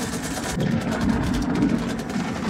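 Low, steady rumble from a war film's soundtrack.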